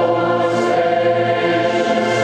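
Massed choir singing held chords with orchestral accompaniment, with a brief sung "s" sound about half a second in.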